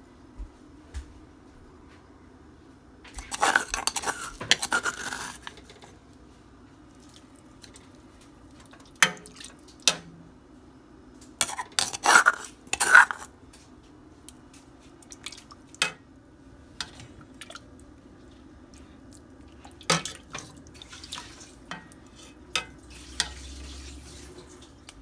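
A ceramic soup spoon knocking and scraping against a stainless steel pot and a stone mortar, in scattered sharp clinks with a longer stretch of scraping a few seconds in. A faint steady hum runs underneath.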